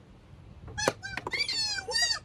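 A sharp knock about a second in, then a quick run of high, squeaky chirps likened to chipmunks.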